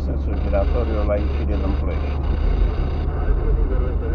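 Steady low rumble of a car's engine and tyres heard inside the cabin while driving, with a voice speaking over it in the first half.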